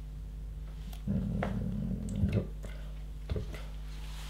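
LEGO pieces being handled on a tabletop: a few small sharp clicks as bricks are picked up and set down. About a second in there is a brief low-pitched rumbling sound lasting just over a second. A steady low electrical hum sits underneath throughout.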